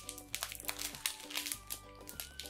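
Plastic candy package crinkling in short, irregular crackles as it is worked open by hand, over soft background music.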